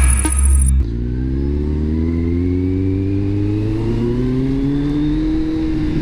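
Intro music cuts off under a second in. Then a Kawasaki Z750R's inline-four engine runs under steady throttle, its pitch rising slowly as the bike gathers speed.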